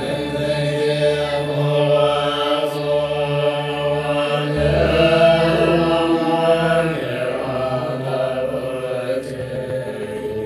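Tibetan lamas chanting a Buddhist prayer, set to musical accompaniment.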